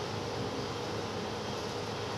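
Steady whooshing noise with a faint steady hum running under it, unchanging throughout.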